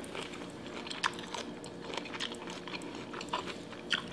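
A person chewing a mouthful of sauce-covered food close to the microphone: soft wet crackles and clicks throughout, one louder about a second in.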